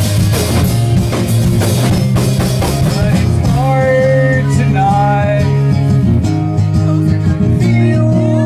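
Live rock band playing loud drums, electric guitar and bass. Dense, busy drumming for the first few seconds, then long held chords with a bending melody line over them.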